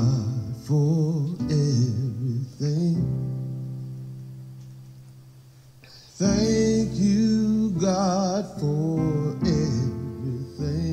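A recorded gospel song: a singer's voice with vibrato over instrumental accompaniment. A held chord fades away in the middle, then the singing comes back in about six seconds in.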